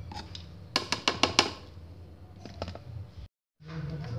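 Light plastic clicks and taps as seasonings are tipped from a small plastic bowl into a food processor's plastic bowl of minced beef, in a quick cluster about a second in and a few more later. A low steady hum sits underneath, and the sound cuts out briefly near the end.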